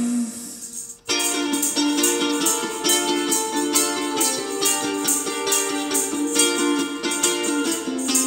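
Ukulele strummed in a steady chordal rhythm, with hand percussion shaking in time. A held note dies away in the first second, and a brief near-silent gap follows before the strumming comes in.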